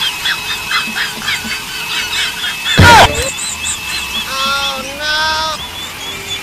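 Cartoon-style comedy sound effects: a run of quick squeaky chirps, a loud hit with a falling tone about three seconds in, then two buzzy horn-like honks near the end.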